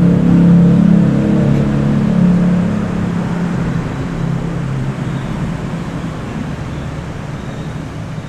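Low, steady motor-vehicle engine hum, strongest for the first three seconds and then fading away.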